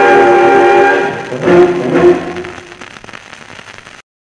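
Dance orchestra on a 78 rpm shellac record playing its closing chords: a long held chord that fades, then two short final chords about a second and a half and two seconds in. After that only the record's faint surface hiss and crackle remain as the music ends.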